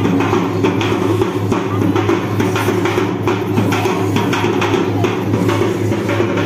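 Drum-led music: a quick, even run of drum strikes over a steady low drone.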